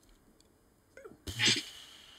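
A man sneezing once, a little past a second in: a short rising intake, then the sneeze itself.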